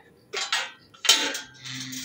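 Metal clinks and scrapes of a wrought-iron garden gate being opened. There are a few short sharp sounds, the loudest about a second in.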